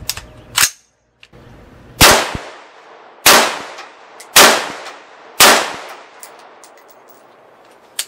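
CMMG Resolute AR-style rifle in 5.56 firing .223 rounds: four shots about a second apart, each with a trailing echo, after a brief click.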